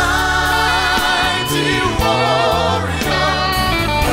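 Live gospel music: a group of singers holding sustained harmonies over the band's bass guitar.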